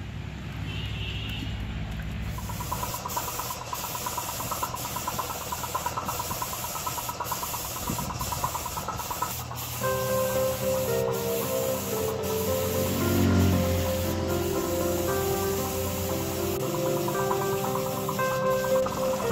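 Compressed-air paint spray gun hissing steadily as paint is sprayed. Background music with a melody comes in clearly about halfway through.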